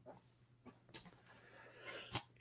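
Near silence: room tone with a few faint breaths.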